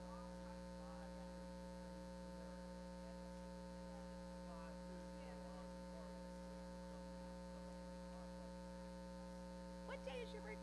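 Steady electrical mains hum, with faint distant voices of people talking underneath.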